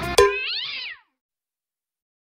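Background music cuts off suddenly with a sharp thump, followed at once by a single cat meow that rises and then falls in pitch.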